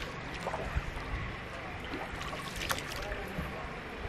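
A wooden paddle dipping and pulling through calm river water as a man paddles a narrow wooden boat, with water lapping and a few brief splashes, the sharpest about two-thirds of the way in.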